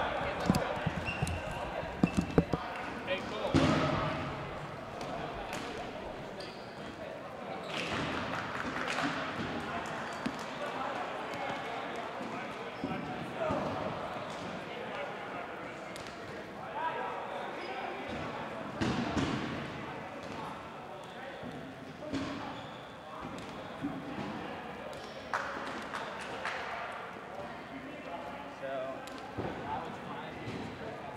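Dodgeballs being thrown, smacking and bouncing on a hardwood gym floor, with several sharp hits in the first few seconds. Players shout and call out across the gym throughout.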